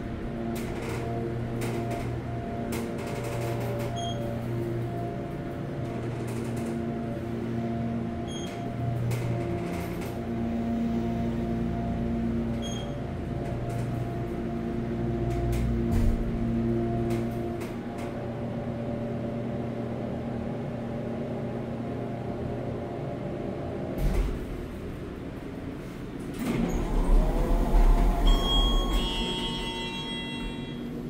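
Kone hydraulic elevator's pump motor running with a steady hum of several tones, heard from inside the cab as the car rises. About three-quarters of the way through it stops with a knock, and a louder low rumble follows as the doors open, with short high tones near the end.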